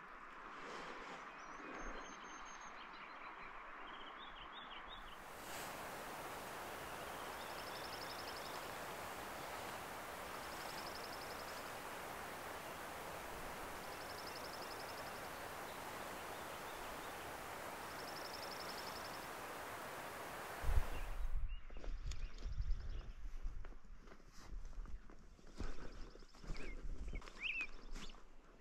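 Songbirds calling outdoors: a high, buzzy trill repeated about every three to four seconds over a steady hiss, with scattered chirps before and after. Near the end the hiss cuts off and low rumbling noise comes in under the bird calls.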